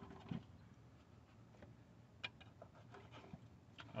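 Near silence with a few faint, scattered clicks and taps of hand work: a thin pick tool working at the edge of an aluminium valve cover to pull out pieces of paper from under it.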